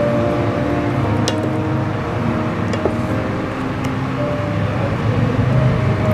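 Thick tomato curry bubbling as it simmers in a pan, over a steady low rumble, with a few sharp clicks.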